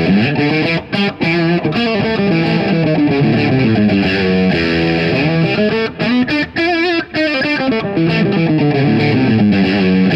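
Fender Custom Shop '51 Nocaster electric guitar played through a slightly overdriven amp, chords and riffs with a few brief breaks between phrases.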